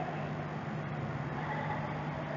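Steady low hum with faint background hiss, unchanging throughout.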